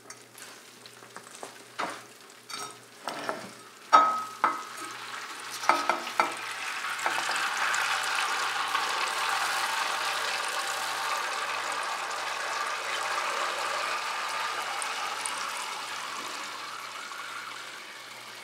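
Clinks and knocks of a stainless roasting pan and a mesh strainer against a glass dish, one ringing briefly. Then, from about six seconds in, a steady stream of rendered duck fat pouring from the pan through the fine-mesh strainer into the glass dish, easing off near the end.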